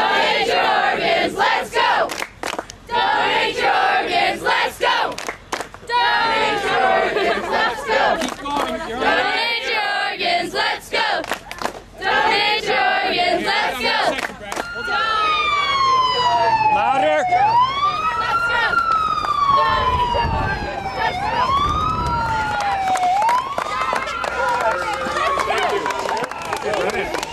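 A group of students chanting 'Donate your organs, let's go' together in repeated bursts, punctuated by hand claps. About halfway through a siren starts, sweeping slowly down and back up in repeated cycles over the crowd noise.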